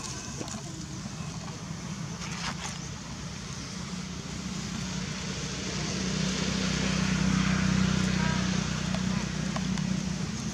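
A steady low motor hum that grows louder around the middle and eases near the end, like a vehicle running and passing, with people's voices in the background.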